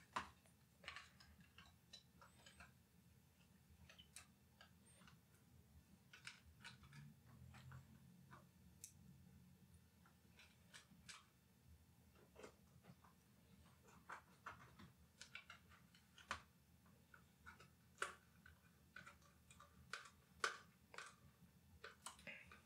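Faint, irregular clicks and taps from handling small drive parts: a mSATA SSD's IDE enclosure being fitted into a metal hard-drive bracket and screwed in with a tiny precision screwdriver. A few louder clicks come in the second half.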